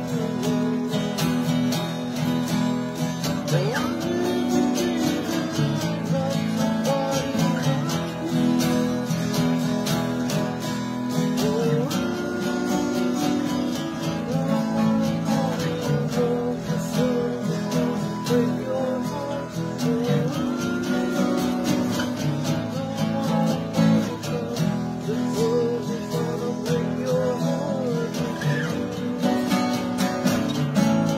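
Acoustic guitar music, strummed steadily, with a melody line that bends in pitch above the chords.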